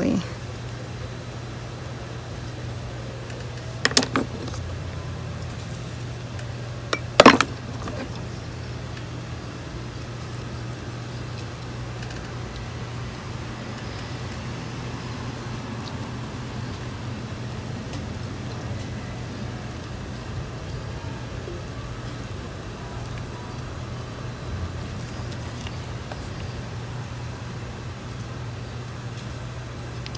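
Two sharp knocks or clinks from handling pots and a wooden-handled tool while succulents are planted in soil, about four and seven seconds in, the second the louder. A steady low hum runs underneath.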